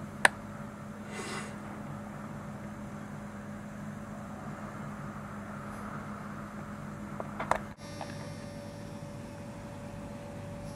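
A steady low hum over faint background noise. A sharp click comes just after the start, a short hiss about a second in, and a few clicks about seven and a half seconds in, after which a faint higher steady tone sets in.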